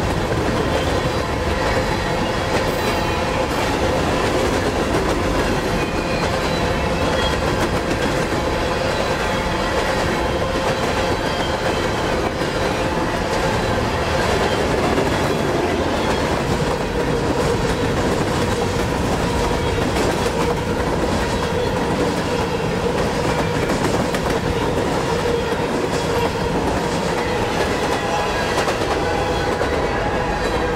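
Empty covered hopper cars of a CSX unit grain train rolling past, a steady rumble and clatter of steel wheels on rail with a thin steady whine running under it.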